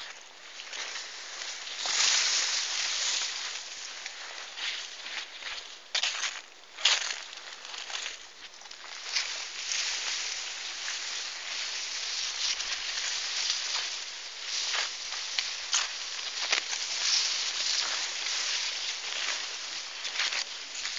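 Leaves of field plants rustling and brushing close against the microphone as the camera is pushed through them: an uneven scraping hiss with sharper swishes now and then.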